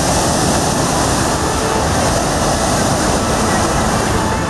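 Cyclone-force wind and heavy surf: a steady, loud roar of gale wind with rough sea waves breaking on the shore.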